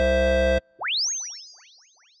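Outro jingle ending on a held chord that cuts off abruptly about half a second in. A quick upward-sweeping sound effect follows and repeats several times, each repeat fainter, like a fading echo.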